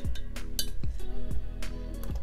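A few light clicks and taps of a paintbrush and a plastic watercolour palette being handled on the work table, over a steady low hum.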